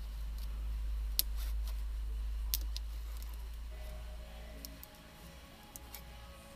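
Low steady rumble with a few sharp, light clicks, the handling noise of a tool being worked against the inside of a wet car rear window. Faint background music comes in during the second half.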